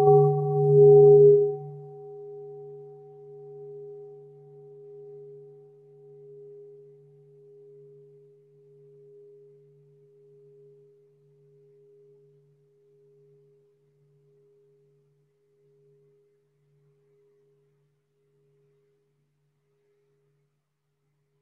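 A meditation bell rings on after being struck. It is loud at first: a low, wavering hum under a clearer higher tone, fading slowly until it dies away about fifteen seconds in. It marks the start of the sitting meditation.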